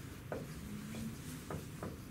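Whiteboard marker writing on a whiteboard: several short scratching strokes as a word is written.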